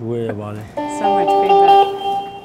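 Electric saz playing a short phrase of sustained notes, starting about a second in, after a brief voice at the start.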